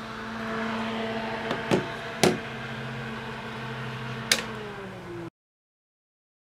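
A small square DC cooling fan running with a steady hum, with a few sharp clicks. After the last click near the end, its pitch starts to fall as it slows, and then the sound cuts off abruptly.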